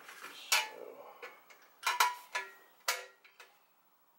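Hella Sharptone horns and their mounting bracket clicking and knocking as they are handled and fitted together. There are a few sharp taps: one about half a second in, two in quick succession around two seconds, and one near three seconds, some ringing briefly.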